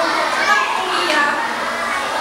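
Many children's voices chattering and calling out at once, a steady overlapping babble with no single clear speaker.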